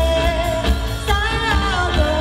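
Live band playing a pop song: a woman singing lead, holding and bending a note, over electric guitar, keyboard, bass and drums.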